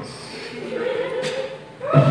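A thin wavering held tone, then a live rock band, drums and electric guitar, comes in loudly just before the end.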